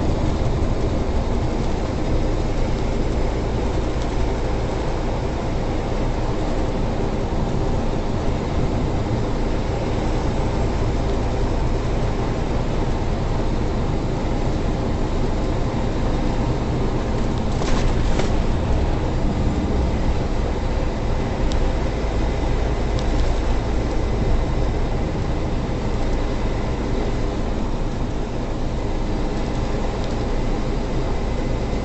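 Semi truck's diesel engine and tyre-and-road noise heard inside the cab while cruising on the highway, a steady drone. A brief double click comes a little past halfway.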